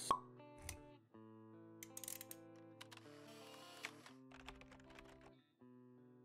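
A sharp pop right at the start, then a faint intro jingle of soft held synth notes with scattered light clicks.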